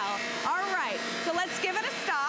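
Two Shark vacuum cleaners, a corded Rocket Zero-M stick and a Rotator upright, running over carpet with a steady motor whir, while voices call out over the noise.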